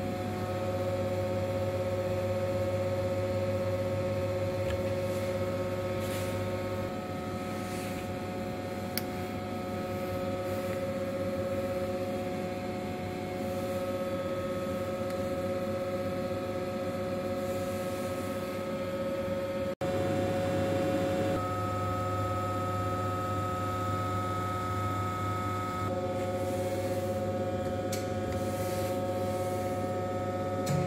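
Reishauer RZ 362A gear grinding machine running under power, giving a steady hum with several steady tones. The sound drops out for an instant about twenty seconds in, and the tones shift slightly just after.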